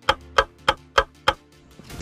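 Clock ticking sound effect: evenly spaced sharp ticks, about three a second, stopping about a second and a half in, over faint background music.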